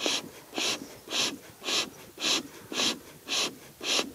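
Bee smoker bellows squeezed over and over, about two puffs of air a second, each a short hiss forced through the smoker. The smoker is lit and putting out thick smoke.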